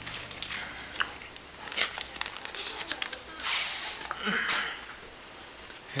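Cardboard phone packaging being pulled apart by hand as the box slides out of its outer packing: rustling and scraping in several short bursts, the longest about three and a half seconds in, with small clicks of handling.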